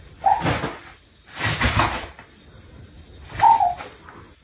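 A kitten mewing twice, short high calls just after the start and about three and a half seconds in, the second one dipping in pitch. Between the calls, loose toilet paper rustles as it moves through the heap.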